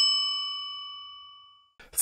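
A single bright bell ding used as a transition sound effect, ringing out with several clear overtones and fading away about a second and a half in.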